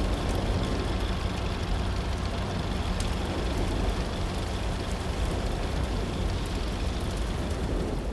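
A fire burning: a steady rushing rumble with scattered faint crackles.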